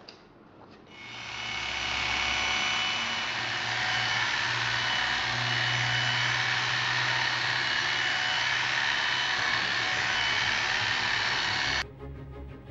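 Electric grooming clippers running steadily as they are worked through a dog's thick coat, coming up to speed about a second in and cutting off suddenly near the end.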